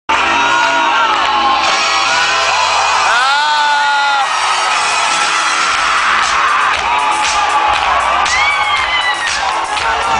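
Live concert music through a PA, with a crowd screaming and whooping over it; one loud whoop about three seconds in.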